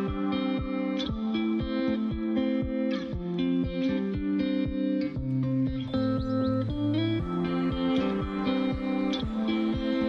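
Background music: a plucked melody over a steady beat.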